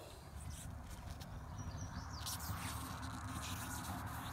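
Faint handling noise: gloved hands moving trading cards and a hard plastic card holder, with a few light ticks and scrapes a little past the middle, over a low steady background hum.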